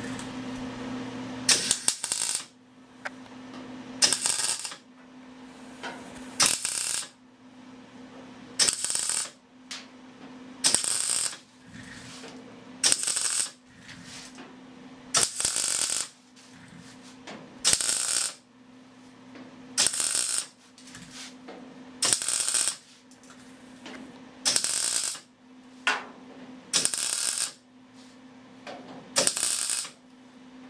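MIG welder laying short stitch welds on a sheet-steel fender seam: a half-second crackle of arc about every two seconds, with a steady low hum in between. The welds are spaced out and done in short bursts to give them time to cool.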